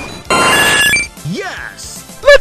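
A bright ringing sound-effect hit, many bell-like tones sounding together for under a second, followed by a brief rising swoosh.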